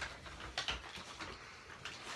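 A few short rustles and soft knocks as someone reaches into a shopping bag and handles the items in it.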